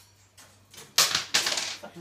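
Something dropped at the birdcage, clattering onto the floor: a sudden loud crash about halfway through, a second hit right after, and both die away within a second.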